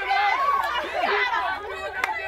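Several young women's voices chattering and calling out excitedly at once, overlapping so no clear words come through.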